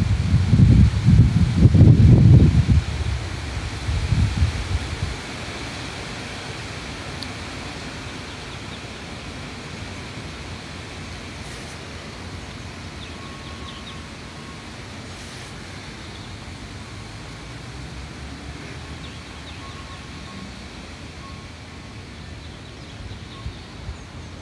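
Wind buffeting a phone's microphone in irregular low gusts for the first five seconds or so, then settling into a steady outdoor background hiss.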